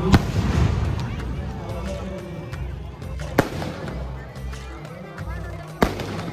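Firecrackers going off in three sharp bangs, one just after the start, one about halfway through and one near the end, over loudspeaker music and the voices of a crowd.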